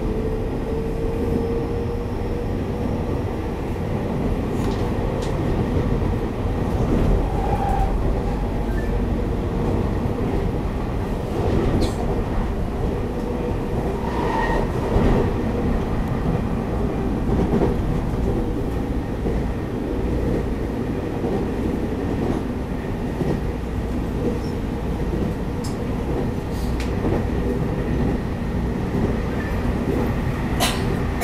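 Taiwan Railways EMU800 electric multiple unit heard from inside the passenger car while running at speed: a steady rumble of wheels on rail, with a few sharp clicks now and then.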